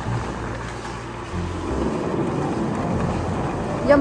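Wind rumbling on the microphone and rolling road noise while riding a small open vehicle along a road.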